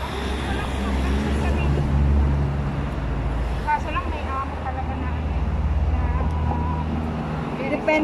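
Road traffic passing close by: a vehicle engine's steady low rumble that dies away about seven seconds in.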